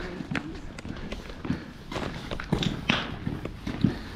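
Footsteps of people walking past on a brick path: a series of irregular hard steps, several in a few seconds.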